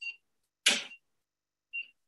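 Short, high electronic beeps, three in all, with a brief hiss about two-thirds of a second in.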